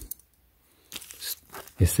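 A second of near silence, then a few short crinkles and snips as scissors cut into a thin plastic bag.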